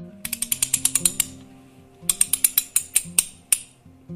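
Rapid ratchet-like mechanical clicking in two runs, about ten clicks a second: the first lasts about a second, the second starts about two seconds in and slows to a few last clicks near the end. Soft guitar music plays underneath.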